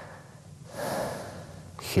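A man breathing audibly close to the microphone: one noisy breath a little under a second in, lasting about half a second.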